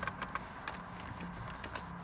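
Faint rubbing and small scattered ticks of a microfiber towel wiping a ceramic coating off glossy plastic console trim, over a low steady hum.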